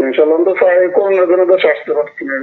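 Speech only: a voice talking over a telephone line, sounding thin with the highs cut off.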